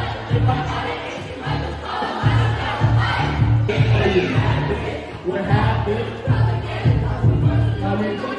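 Karaoke: a pop backing track with a heavy, pulsing bass beat played over the hall's speakers, with people singing along and a crowd joining in.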